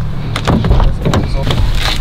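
A car door opened by its outside handle and someone climbing into the seat, with several sharp clicks and knocks and rustling. A heavy low rumble of handling noise from the moving camera runs underneath.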